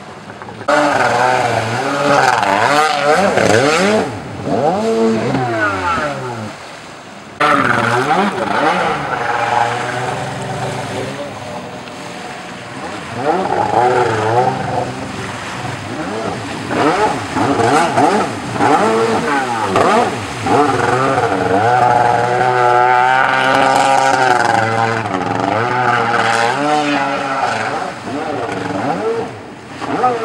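Ported Yamaha 701 two-stroke twin of a stand-up jet ski, revving hard and falling back again and again as the ski is thrown around. The sound breaks off and comes back abruptly a few times.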